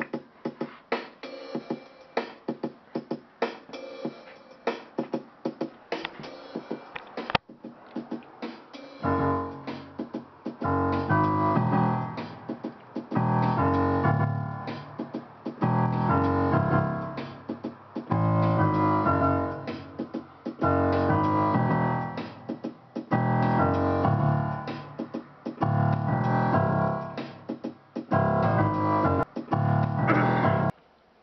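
Piano sound from a Roland Fantom-S88 keyboard workstation, played live as the bass piano part of a hip-hop beat. For about the first nine seconds there are only quick, sharp clicks. Then low, heavy piano chords come in, in a phrase that repeats about every two and a half seconds.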